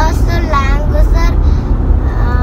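Steady low rumble of a car's engine and road noise heard inside the cabin while driving, with brief snatches of voice in the first second.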